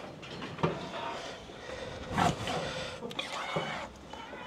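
A weanling calf held in a steel cattle crush gives a short bawl about two seconds in, among a few knocks of the crush's metal.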